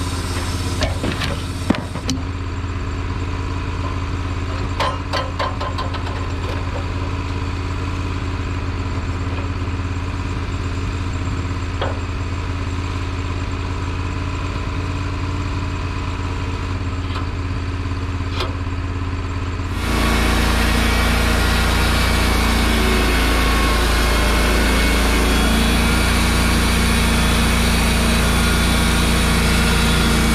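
Wood-Mizer LT15 portable band sawmill's engine running steadily at idle, with a few sharp knocks from the log being turned with a cant hook. About two-thirds of the way in, the engine speeds up and gets louder, and a steady hiss joins it as the band blade cuts along the log.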